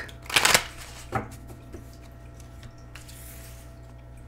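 Oracle cards being spread out in a fan across a velvet cloth: a quick swish of sliding cards near the start, then a shorter one about a second in.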